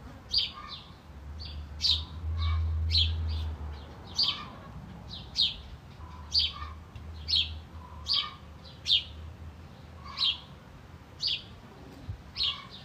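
A small bird chirping over and over, short high chirps about twice a second, with a low rumble underneath through the first part.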